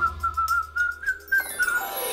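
A whistled note in a children's music jingle: it slides up, holds a high wavering pitch for about a second and a half, then a falling sweep follows, with the beat paused underneath.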